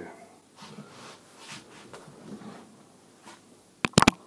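Faint rustling of a person moving and handling things, then two sharp clicks in quick succession near the end.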